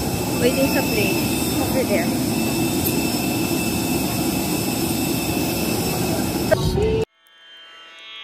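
Steady roar of a nearby airliner's engines running, with a high steady whine over it; it cuts off suddenly about seven seconds in.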